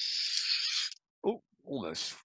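Air hissing out of a deflating balloon through the rear nozzle of a plastic balloon-powered toy train, driving it forward with its whistle taped shut. The steady hiss cuts off about a second in as the balloon empties.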